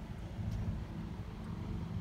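Honda Civic 2.2 i-DTEC four-cylinder diesel engine idling with a steady low hum.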